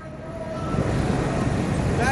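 City street noise: a steady low rumble of traffic.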